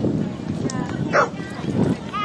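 A dog gives one short, high bark about a second in, over a background murmur of voices.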